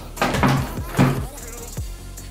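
Electronic dance music with a steady beat of about two strokes a second, over which small plastic water bottles knock on a wooden table as they are flipped, the sharpest knock about a second in.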